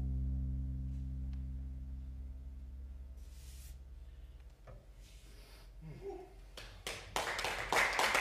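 A low plucked note on an acoustic double bass rings on and slowly dies away over about four and a half seconds. After a short quiet, an audience starts clapping near the end, the applause building.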